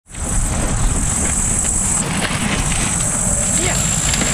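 Steady outdoor noise with a low rumble, like wind on the microphone, under a thin high-pitched whine that drops out briefly about halfway, with faint voices in the background.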